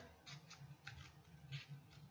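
Faint snips of scissors cutting paper: a few light, scattered clicks.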